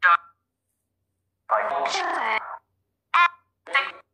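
Chopped fragments of speech-like audio from a necrophonic ghost-box app. There are four abrupt bursts, the longest about a second, each cut off into dead silence. The uploader takes them for spirit voices (EVPs).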